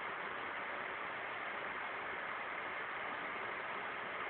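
Steady, even hiss with no distinct events: the background noise of an outdoor night recording.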